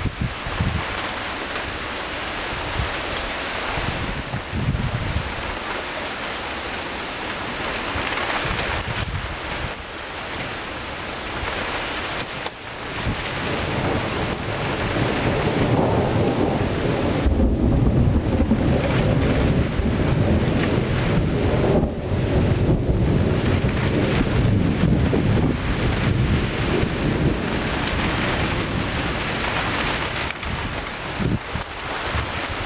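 Thunderstorm: a steady hiss of rain and wind on the microphone, with a long low rumble of thunder that swells about halfway through and carries on to the end.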